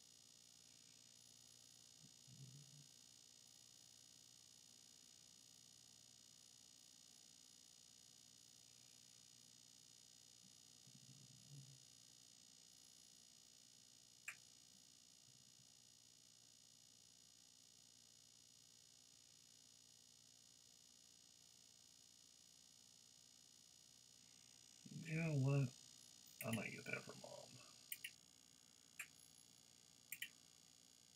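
Near silence with a faint steady electrical hum, broken by a man's brief murmur about 25 seconds in and a few single computer-mouse clicks near the end.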